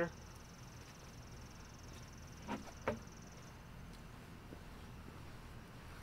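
A steady, high-pitched insect trill that stops about three and a half seconds in, with two brief short sounds just before it ends.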